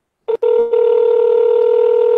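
Electronic call tone from a computer voice-call program: a short beep, then one steady tone held for about two seconds as the call is placed.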